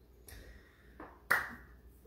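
A single sharp knock about a second and a half in, after a fainter tap, in a quiet small room.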